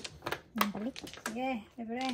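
A few sharp clacks of mahjong tiles being handled on the table early on, then a person's voice in three short pitched sounds without clear words, which are the loudest part.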